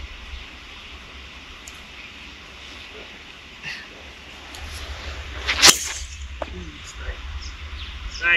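Golf club striking a teed-up golf ball on a tee shot: one sharp, loud crack a little past halfway.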